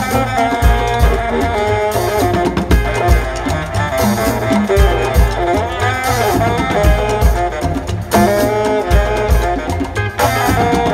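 Live Afrobeat band playing an instrumental passage: a horn section of saxophones and trumpets plays melodic lines over electric guitar, keyboard, hand drums and a drum kit keeping a steady beat.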